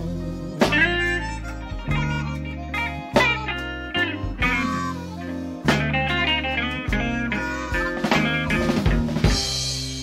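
Electric blues band recording in an instrumental passage between sung lines: an electric guitar plays a lead with bent notes over bass and drum kit, with a sharp drum accent about every two and a half seconds.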